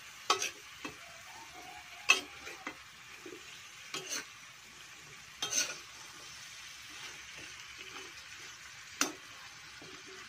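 Vegetables and shrimp sizzling in a wok while being tossed with tongs, which clack sharply against the pan about seven times at uneven intervals over a steady faint frying hiss.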